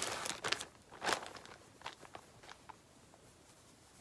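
Rustling handling noise as quilt blocks and fabric pieces are taken out and sorted by hand: a few short rustles in the first second or so, then a few faint ticks, settling to room tone.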